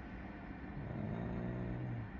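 A man's drawn-out, wordless hum, starting about a third of the way in and held at one pitch, over steady background noise.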